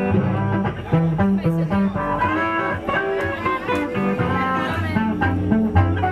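Live electric blues band playing an instrumental passage. A harmonica, played with both hands cupped around a vocal microphone, plays held notes over guitar and a steady bass line. Cymbal strokes come in near the end.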